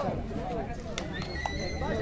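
Crowd voices talking and calling out. A faint, steady, high whistle tone comes in a little past halfway.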